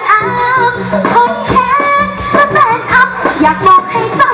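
A solo voice singing a Thai likay song through the stage sound system, over band backing with a bass line and a regular beat.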